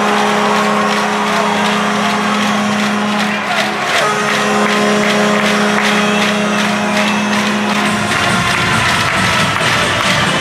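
Arena goal horn blasting for a home goal in ice hockey. It sounds one long, steady blast, stops briefly about three and a half seconds in, then sounds a second long blast that ends about eight seconds in, over music and crowd noise.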